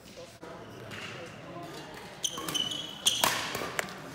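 Court shoes squeaking on a sports hall floor: a few short, high squeaks in the second half, with a sharp knock among them just after three seconds in.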